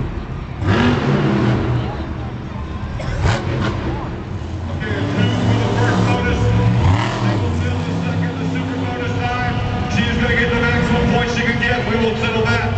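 Monster truck engine revving hard, its pitch rising and falling repeatedly as the truck is driven through its freestyle run, with voices over it.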